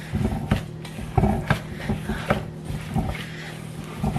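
Plastic-gloved hands squeezing and kneading moist cake crumbs and melted chocolate in a stainless steel bowl: irregular squishes and soft knocks, several a second, as the crumbs are mashed into a sticky cake-pop dough.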